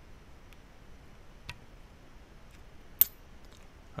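A few faint metallic ticks, then one sharp click about three seconds in, from a screwdriver and small metal parts as the solenoid switch board in a Beogram 4000 turntable's tonearm mechanism is loosened and shifted by hand.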